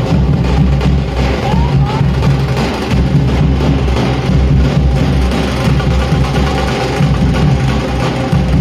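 Loud, continuous drum-led music with dense percussion and a heavy low end.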